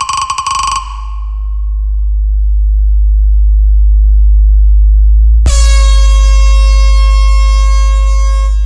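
DJ competition sound-check track: a steady, very deep bass tone sounds throughout, with a stuttering horn-like synth stab in the first second. Faint rising tones lead into a loud air-horn blast about five and a half seconds in, held for about three seconds.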